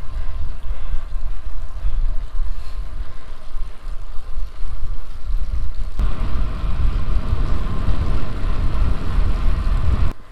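Wind rushing and buffeting over the microphone of a camera mounted on a moving bicycle, a loud low rumble that gusts up and down, with tyre noise from the tarmac lane beneath it. The sound shifts abruptly about six seconds in.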